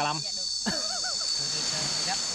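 A steady, high-pitched insect chorus drones throughout as several level tones that do not change, with men's voices over it.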